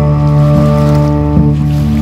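Acoustic guitar and fiddle playing an instrumental passage of long held notes, with no singing.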